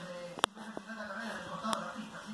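Indistinct voices in the background, with two sharp clicks: one about half a second in and one near the end.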